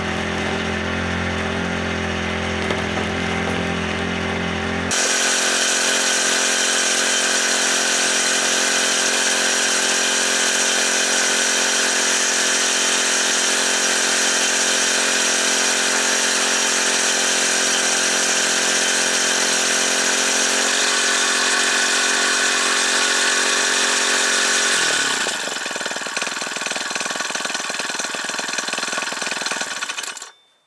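Small gas engine of a portable capstan winch running steadily at speed while its drum hauls a log up onto the trailer by rope. About 25 seconds in, the engine slows to a lower, steady pitch.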